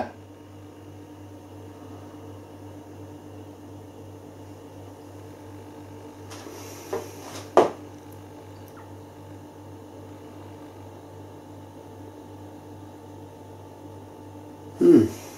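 Steady low electrical hum with a few faint steady tones, the room tone of a small room. About six seconds in, one short sniff at a glass of beer, followed just after by a single sharp click.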